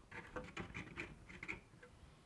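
Faint scraping, ticking and a few short squeaks of a cut-open plastic water jar's two halves being slid against each other by hand.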